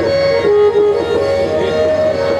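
Harmonium playing a repeating lehra melody in sustained reedy notes that step between pitches, with pakhawaj drum strokes under it.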